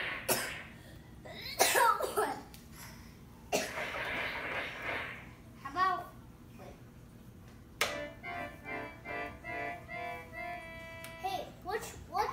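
Toy mini electronic keyboard played by a child: a few short hissing bursts in the first five seconds, then from about eight seconds in a quick run of steady electronic notes. A child's voice is heard near the end.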